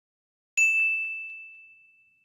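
A single bell ding sound effect about half a second in: one clear, high tone that strikes suddenly and rings, fading slowly.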